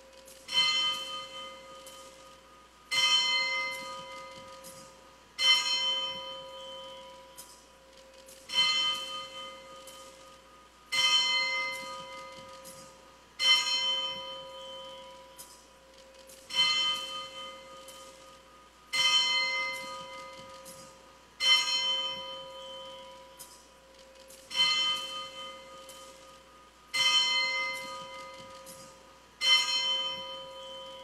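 A single church bell tolling at a slow, even pace, about one stroke every two and a half seconds, each stroke ringing out and fading before the next. It is rung as the Blessed Sacrament in the monstrance is raised in blessing.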